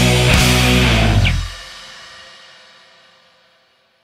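Rock band music stops abruptly about a second and a half in. The final chord rings on and fades away.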